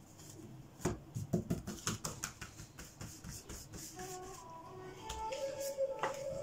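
Playing cards being handled and shuffled on a tabletop: a run of light, irregular clicks and slaps. About four seconds in, soft background music comes in, a few notes stepping up and down and then one long held tone.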